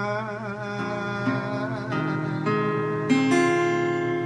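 Ibanez acoustic guitar picking the closing notes of a song, a new note or chord struck about every half second and left to ring. A sung note with vibrato trails off in the first second.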